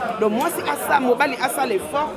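Only speech: a woman talking, with other voices chattering.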